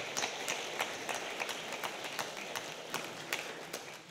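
Audience applauding: many overlapping hand claps that thin out and fade away near the end.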